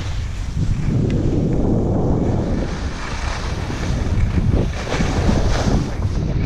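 Wind rumbling on the microphone of a skier moving downhill, mixed with the hiss and scrape of skis on groomed snow, with a few sharper scrapes in the second half.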